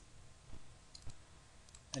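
A few faint, sharp computer mouse clicks as the dialog is confirmed and closed in the CAD program.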